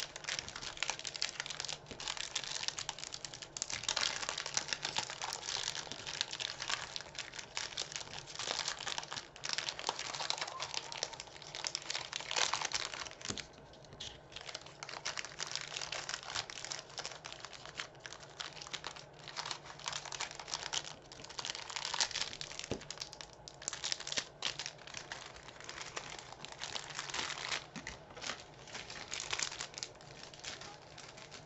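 Clear plastic packaging bags crinkling and rustling as they are handled and opened, in near-continuous bursts with a couple of brief lulls.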